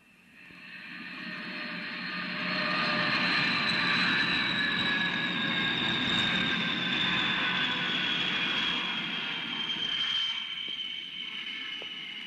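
Jet aircraft flying over: a rushing engine noise that swells up over a few seconds and then slowly fades, with a high whine that drifts steadily down in pitch as it passes.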